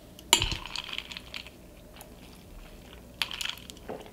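A drinking glass with a straw being handled. A sharp clink comes about a third of a second in, followed by about a second of light clinking and rattling, and a second short clatter comes about three seconds in.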